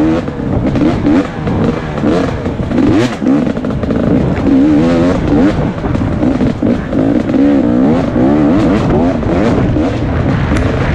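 2017 KTM 250 XC-W two-stroke dirt bike engine revving up and down under the rider's throttle, its pitch rising and falling every second or so, with a sharp knock about three seconds in.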